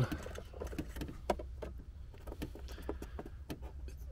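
Irregular light clicks and rustles of a rubber sunroof drain hose being handled and bent by hand, over a steady low hum.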